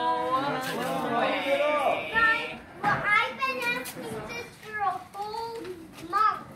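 Children's excited voices mixed with overlapping family chatter, none of it clear enough to make out as words.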